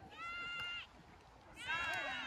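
Two short, faint, high-pitched shouted calls from players on a beach volleyball court, each under a second long; the second rises and then falls in pitch.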